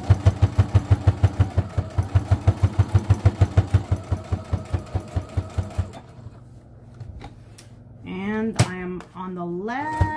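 Electric domestic sewing machine stitching at a steady pace, its needle mechanism clacking about six times a second over a motor hum, then stopping about six seconds in. It is sewing a straight top-stitch line through cotton fabric layers.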